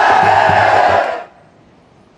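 A bar crowd cheering and yelling together over music with a steady beat, cut off abruptly a little over a second in, leaving only faint quiet ambience.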